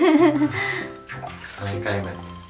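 Water sloshing in a bathtub around a dog being bathed, under background music of steady held notes, with a brief wavering voice like a laugh at the very start.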